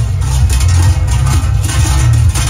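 Loud music with a heavy bass line.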